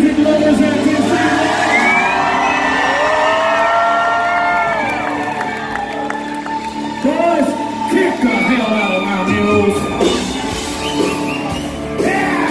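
Live country-rock band holding a sustained chord as a song intro while the crowd whoops and cheers; sharp drum strokes come in near the end as the song gets going.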